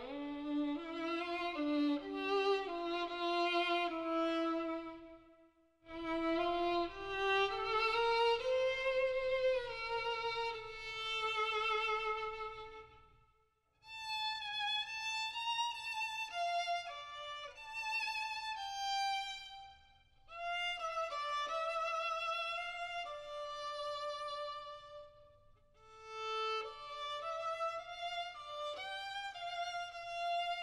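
Background music: a slow melody played on solo violin with vibrato, in long phrases separated by brief pauses.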